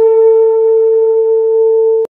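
Saxophone holding one long, steady final note that cuts off suddenly at the end.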